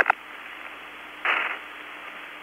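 Hiss of the recovery forces' two-way radio channel in a gap between transmissions, with a short burst of static about a second and a quarter in.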